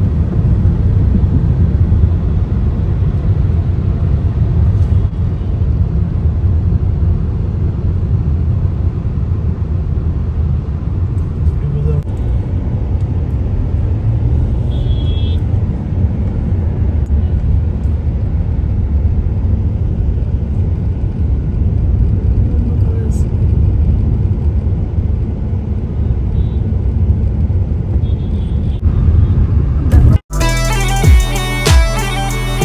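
Inside a moving car: a steady low rumble of engine and road noise through the cabin, with a brief higher-pitched sound about halfway through.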